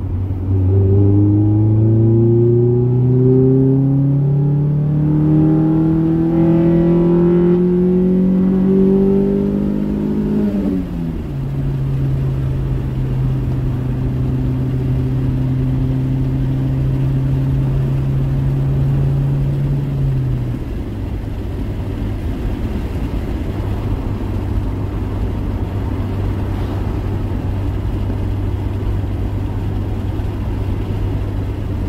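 Honda Prelude's G23 four-cylinder engine heard from inside the cabin, revs climbing steadily under acceleration for about ten seconds. The revs then drop sharply at an upshift and hold steady in the higher gear. About twenty seconds in the engine note falls away, leaving a steady low rumble of engine and road noise.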